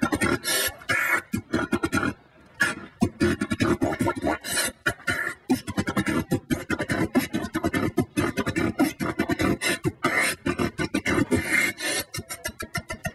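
A man beatboxing into a handheld microphone: a fast, steady stream of drum-like mouth sounds with a short break about two seconds in.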